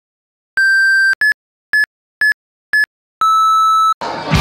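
Electronic beeps, a sound effect of the kind a digital menu makes. There is one long beep, then four short, slightly higher beeps about half a second apart, then a long, lower closing beep.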